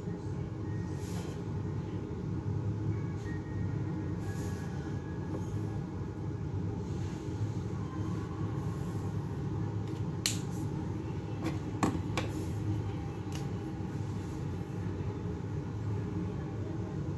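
A steady low hum with a few faint, short scratches of a brush marker coloring on a paper page; the clearest scratches come about ten and twelve seconds in.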